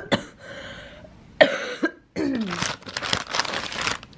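A woman coughing in a fit: a couple of harsh coughs, then a longer run of rough coughs in the second half. It is the cough of someone who is ill.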